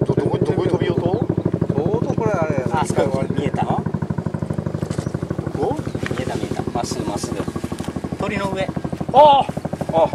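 A small engine running steadily with a fast, even pulse, with people talking over it.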